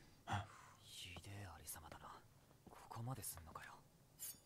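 Quiet, breathy speech: soft dialogue from the subtitled anime episode playing low in the mix.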